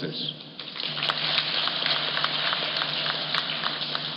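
Audience applauding: a dense patter of many hands clapping that builds about half a second in and thins out near the end.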